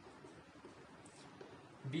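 Faint marker-pen writing on a whiteboard, with a few light squeaks of the tip about a second in, over quiet room tone; a voice starts speaking right at the end.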